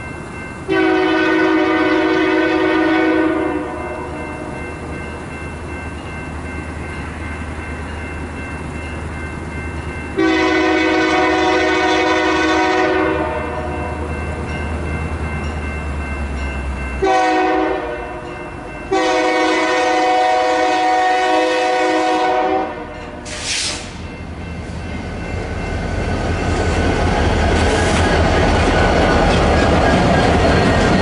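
Diesel freight locomotive horn sounding the grade-crossing signal as the train approaches a crossing: two long blasts, a short one, then a long one, each a chord of several tones. A brief hiss follows the last blast. The train then passes close by, its rumble growing louder with wheels clicking over the rail joints.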